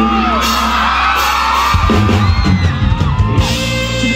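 Live band music, loud, with the crowd screaming and whooping over it; the bass and drums come in heavily about two seconds in.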